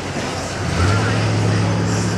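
A motor vehicle engine running with a steady low hum that grows louder a little under a second in.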